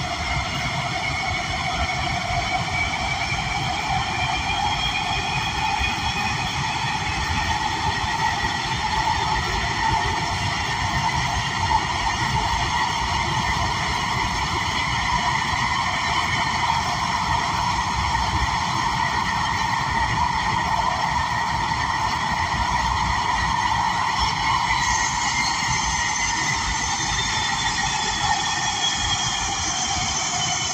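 Breda A650 subway car running through a tunnel, heard from inside the passenger cabin: a steady rumble and rail noise with whining tones on top, one climbing slowly in pitch early on and another dropping in pitch near the end.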